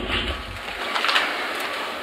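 Foil sachets of dried wine yeast rustling as hands rummage through them and lift them out of a cardboard box.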